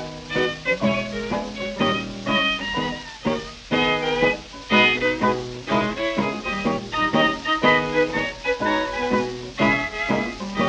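Instrumental break of a 1930 British dance-band recording, a small band of clarinets, violin, guitar and piano playing a lively swing-style passage with no vocal, heard from a 78 rpm shellac disc.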